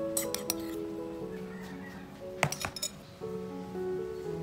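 Background music with a melody of held notes. Two short clusters of clinks come over it, one just after the start and a louder one a little past the middle, typical of metal kitchenware being handled.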